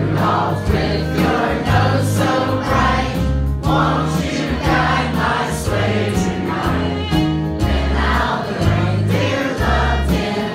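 Several voices singing a Christmas song together into microphones, over sustained low accompaniment notes.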